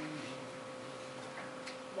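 Quiet room tone with a faint steady hum and a couple of soft ticks, after a voice trails off at the very start.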